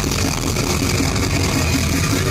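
A heavy rock band playing live and loud: distorted electric guitars and drums in a dense, unbroken wall of sound.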